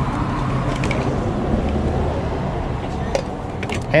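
Outdoor background noise: a steady low rumble with faint distant voices and a few light clicks near the end.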